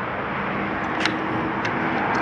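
Steady outdoor background noise with a faint low hum, and two short sharp clicks about half a second apart near the middle.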